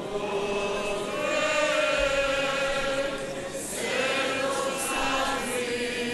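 Church congregation singing a Greek hymn together, the many voices drawing out long held notes that shift slowly from one pitch to the next.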